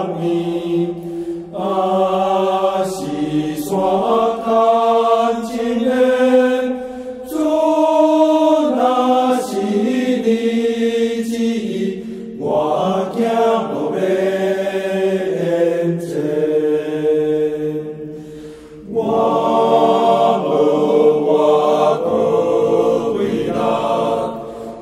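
A church hymn sung in Taiwanese Hokkien, with slow, held notes in long phrases and a brief breath pause about two-thirds of the way through.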